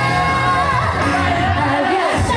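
A female singer's live vocal, amplified through a handheld microphone, singing a Japanese pop song over full backing music, holding one long note through the first second before the melody moves on.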